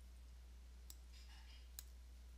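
Near silence with two faint computer-mouse clicks, about a second apart, over a low steady hum.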